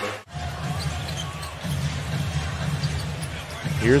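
Basketball being dribbled on a hardwood court over steady arena crowd noise. The sound cuts out for a moment just after the start.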